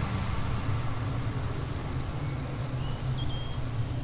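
A steady low rumble with a light hiss over it, with no clear pitch or rhythm.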